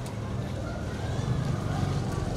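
A low, steady background rumble with no clear source, heard in a pause between spoken phrases.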